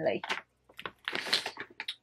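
Plastic shopping bag rustling and crinkling, with a quick run of clicks and small knocks as items inside it are moved about, busiest about a second in.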